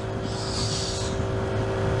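Vespa GTS 125 scooter's 125 cc single-cylinder four-stroke engine running steadily at cruising speed, an even low hum, with a brief rush of hiss in the first second.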